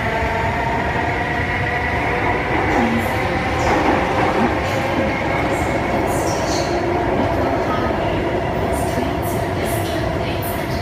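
Interior of a Singapore Circle Line C830C (Alstom Metropolis) metro car running through the tunnel: a steady rumble of the car on the track with a whine of several steady tones from the train's drive. A few brief high hisses or squeaks come through in the second half.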